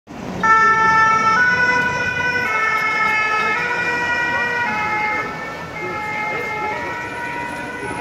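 French two-tone emergency-vehicle siren (the 'pin-pon' deux-tons), alternating between two notes about once a second. It is loudest near the start and eases off a little later on.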